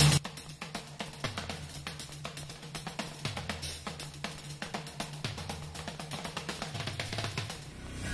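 Film background score: a steady drum-kit beat over a bass line that steps between notes.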